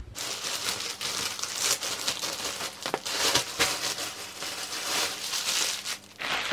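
Plastic packaging crinkling and rustling as it is handled, a continuous irregular crackle with many small sharp crinkles.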